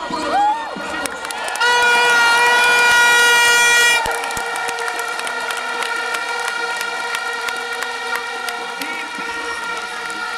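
Handheld horns blown in a large crowd: a short toot near the start, then one loud blast lasting about two and a half seconds, and other horns sounding on over crowd noise after it.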